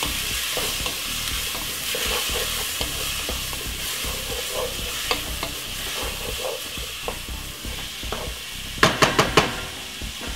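Chopped peppers, onion and garlic sizzling in olive oil and butter in a pot, a steady hiss with small scattered pops. About nine seconds in, a quick run of knocks as a wooden spoon stirs against the pot.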